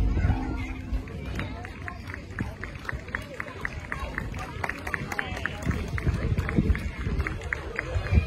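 Amplified live band music cuts off abruptly at the start. What follows is outdoor crowd noise: indistinct voices and a run of scattered sharp claps, several a second, over a low rumble.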